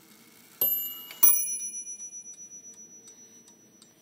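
Hammers in the Franz Hermle movement of a crystal regulator mantel clock strike its two bells once each, about half a second apart, the second note lower, in a ding-dong. The bells ring on and fade over a couple of seconds while the movement ticks underneath.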